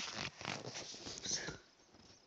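Rustling and scraping handling noise from a phone being swung about close to its microphone, in several rough bursts that stop suddenly about one and a half seconds in.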